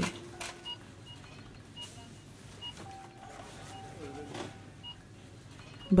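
Quiet sound bed of short, high electronic beeps at irregular intervals, with a steadier held tone about halfway through and a few faint clicks.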